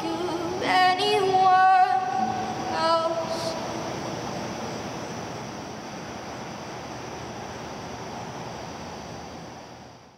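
A woman sings the last few long-held notes of a song over an acoustic guitar, echoing in a concrete parking garage. After about three and a half seconds the voice stops and the sound dies away into a steady wash that fades out at the end.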